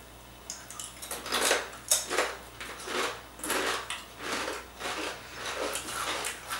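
Satsuma-imo (sweet potato) and renkon (lotus root) chips being crunched in the mouth, a run of irregular crisp crunches about every half second.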